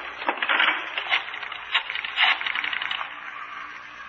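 Rotary telephone being dialed: runs of rapid clicks as the dial spins back, fading out over the last second.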